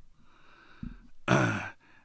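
A man's faint in-breath at a close microphone, then a short breathy, lightly voiced sigh about a second and a half in.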